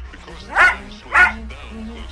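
Small white dog barking twice in quick succession, short sharp barks about half a second apart, excited at its owner's return.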